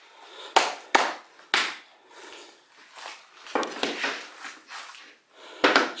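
Engineered acacia flooring planks knocking against the floor and each other as a board is handled and laid into place: three sharp wooden clacks in the first second and a half, then a rougher knock and scrape near four seconds and one more knock near the end.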